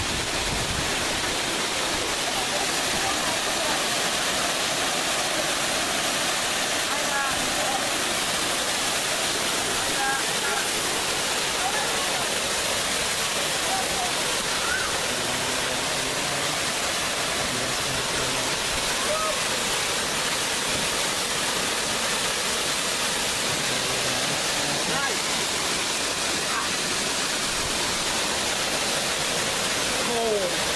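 Waterfall, falling water rushing steadily and evenly, with faint voices now and then.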